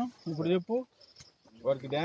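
Faint, steady high-pitched chirping of insects running under a man's speech, which breaks off for about half a second in the middle.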